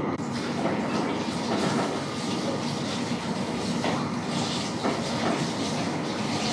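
Steady mechanical running noise of lab equipment, with a few light clicks as plastic microcentrifuge tubes and the centrifuge lid are handled.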